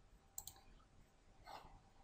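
Near silence broken by two faint computer-mouse clicks close together about half a second in.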